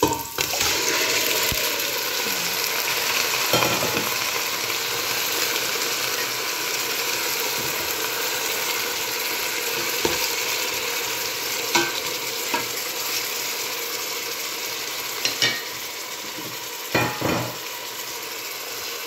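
Raw chicken pieces dropped into hot oil and sautéed aromatics in a stainless steel pot, setting off a loud frying sizzle that rises sharply about a second in and slowly eases off as the meat cools the pan. A few short knocks against the pot come as the chicken is stirred.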